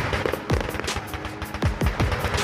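Fireworks bursting overhead: rapid crackling and popping of aerial shells, with several sharper bangs, heard over music.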